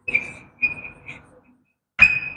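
Chalk writing on a blackboard: two short strokes, each with a thin, high, steady squeal, the second starting about half a second in.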